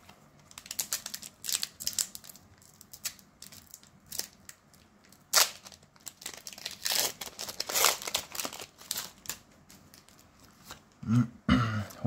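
Foil Pokémon booster pack wrapper crinkling and being torn open by hand: a run of irregular crackles and rips, loudest about halfway through.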